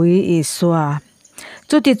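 A voice speaking Mizo, with a short pause about a second in before speech resumes.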